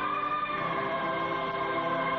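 Background music score: a choir of voices holding one long sustained chord.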